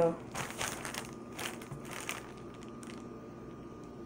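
A plastic mailer bag crinkling as it is handled, with scattered crackles for the first two seconds or so and quieter rustling after.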